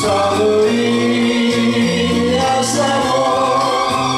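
A man singing a Japanese pop ballad into a microphone over instrumental backing music, his voice holding long notes.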